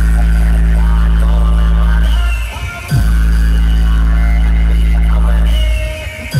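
Electronic bass test track played very loud through a DJ truck's large speaker stack of 16 bass cabinets. A deep, sustained bass note drops out briefly about halfway through, slides down in pitch, then comes back in, and starts to drop out again near the end.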